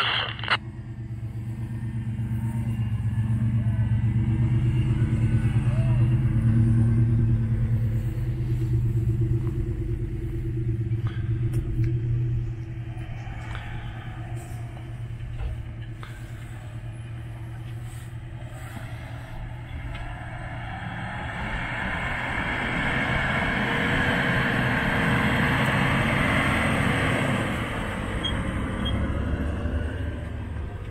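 Engine of an off-road 4x4 SUV working under load on a steep hill climb: a low, steady drone that swells over the first several seconds and eases off about twelve seconds in. It builds again later with a rougher, noisier edge before falling back near the end.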